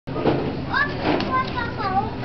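A young girl's high-pitched voice: a quick run of short gliding squeals and sing-song calls while she plays.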